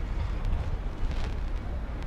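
Wind rumbling on the microphone of a handheld camera outdoors: a steady low buffeting.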